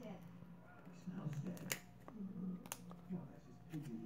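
Glossy baseball trading cards that are stuck together being peeled apart by hand, with sharp cracks as they separate, two of them about a second apart in the middle; the sticking comes from the cards' glossy surfaces bonding together.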